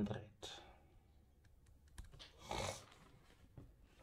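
Faint scattered clicks, a handful in the first half, with a short soft rustle a little past halfway.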